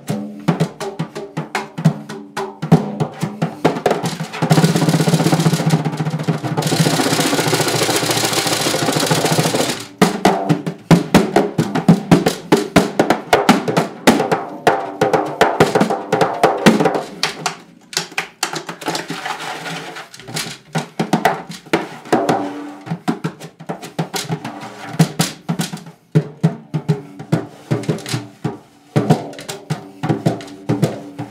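Free-improvised solo drumming on a single drum: quick, irregular stick strikes on the head while the other hand presses and rubs it. From about four to ten seconds in the strikes merge into a dense, continuous roll. After that come scattered sharp hits that thin out and quieten in the second half.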